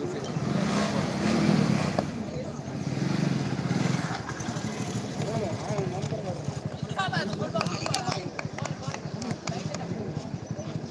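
Voices of people talking and calling out in the open air, over a low rumble that is loudest for the first four seconds, with a few sharp clicks near the end.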